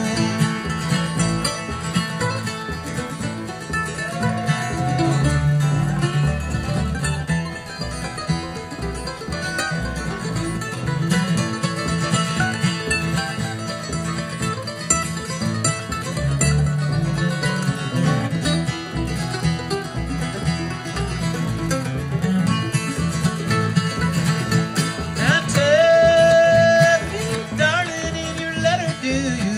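Live bluegrass band playing an instrumental break between verses, with a mandolin picking the lead over strummed acoustic guitar and upright bass.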